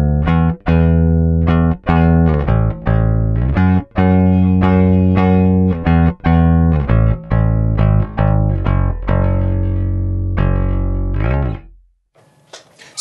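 Passive Fender Precision-style electric bass with a single pickup, played with a pick: a line of sustained notes, each with a sharp, bright attack and separated by short gaps, stopping just before the end. It has a clear, defined mid-range.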